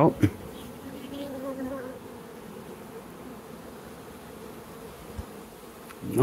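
Honeybees buzzing over an opened mating nuc, a steady hum from a crowded colony, with one bee droning closer to the microphone for the first couple of seconds. A single faint tap about five seconds in.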